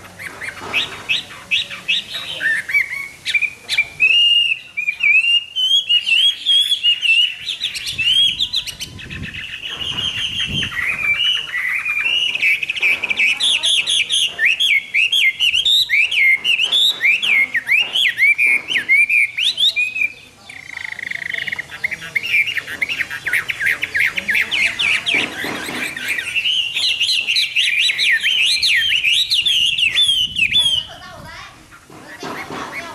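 Chinese hwamei singing a long, varied song of fast whistled phrases that sweep up and down, with a brief break a little past twenty seconds in.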